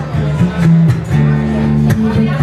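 Acoustic guitar playing a blues accompaniment: held low notes and chords with sharp plucked attacks, and a hard strum near the end.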